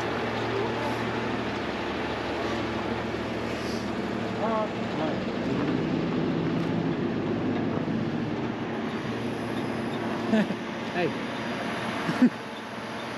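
Heavy rotator wrecker's diesel engine running steadily with its hydraulics working the boom and winch line. A second steady tone joins through the middle few seconds, and there are a few short, sharp knocks near the end.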